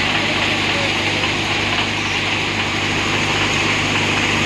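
NVT thresher with a side basket running steadily while threshing chickpeas: a low steady machine drone under a dense, even rushing noise.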